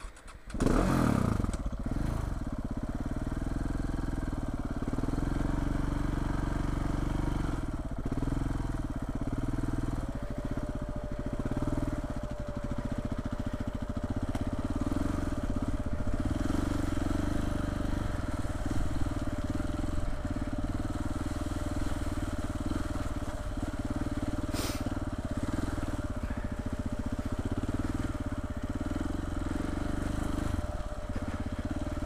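Single-cylinder KTM trail motorcycle engine, heard from on the bike, coming in suddenly about half a second in and then running steadily as it rides along. A faint steady whine joins about ten seconds in.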